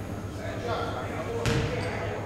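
A basketball bounces once on a hardwood gym floor, a sharp thud about one and a half seconds in that rings out in the hall, with people's voices around it.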